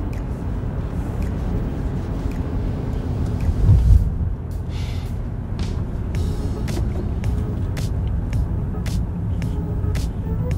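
Car road noise heard from inside the cabin: steady tyre and engine rumble as the car slows down on a town street, with a louder thump about four seconds in.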